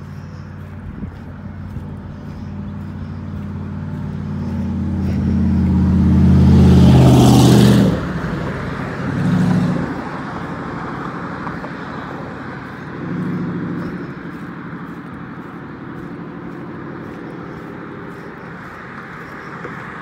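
Road traffic passing on a bridge. A motor vehicle's engine drone and tyre noise build over several seconds to a loud close pass about seven seconds in, then drop away abruptly. Two smaller vehicle passes follow at about ten and thirteen seconds, over a steady traffic hum.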